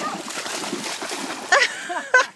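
A dog jumping off a dock into a lake, splashing and churning the water. A short voiced exclamation cuts in near the end.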